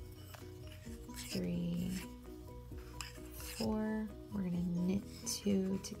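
Soft background music, with the faint clicks of bamboo knitting needles and the rub of yarn on the needles as stitches are worked, and a few short murmured words.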